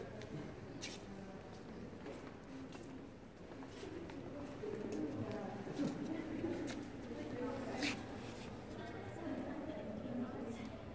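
Indistinct voices murmuring in the background, with a few sharp clicks, the clearest about a second in and near the end.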